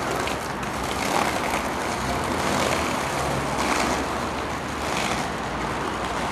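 Steady traffic noise of a city street, heard as an even rumble and hiss.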